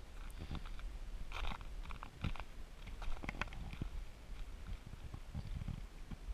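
Footsteps crunching through deep fresh snow: irregular crunches and clicks over a low steady rumble.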